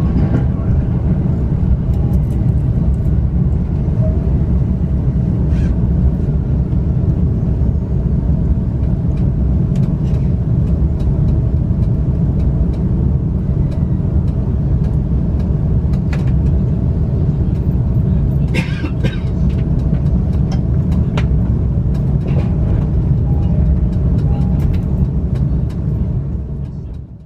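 Steady low rumble of an electric commuter train's running gear, heard from inside the carriage as it slows alongside a station platform, with scattered light clicks and a short hiss about three-quarters of the way through.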